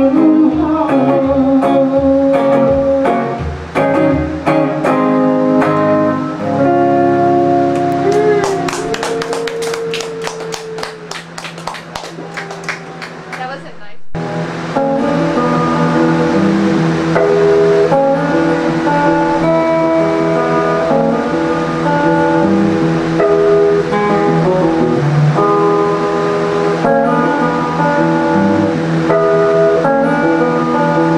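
Electric hollow-body guitar played through an amplifier in an instrumental passage without vocals: picked notes and chords, a quieter stretch of fast rhythmic strumming around the middle, then a sudden break about 14 seconds in, after which melodic lead notes run over a steady bass line.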